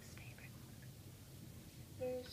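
Quiet room hum with brief faint whispering in the first half second.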